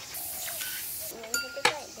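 A large wok of soup simmering, with a steady hiss for about a second, then two light metallic clinks.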